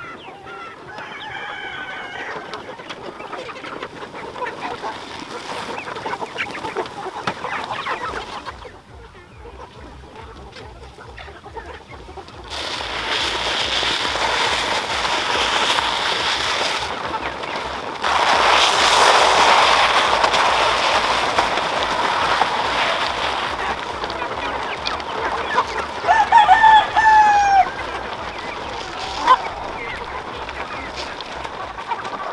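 A large flock of free-range native chickens clucking and calling, with a rooster crowing loudly near the end. A long stretch of loud rustling, hissing noise fills the middle.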